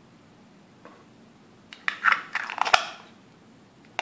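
Two halves of a 3D-printed PLA box being slid and pressed together by hand: plastic scraping with several light clicks about two seconds in, one sharper click in the middle of it, and another click at the end.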